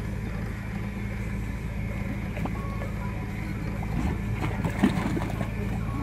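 Steady low engine rumble from machinery at a construction site, under a faint wash of noise, with a few small knocks about four to five seconds in.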